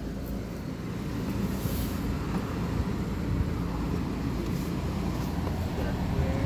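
A car pulling away slowly, heard from inside the cabin: a steady low rumble of engine and tyres.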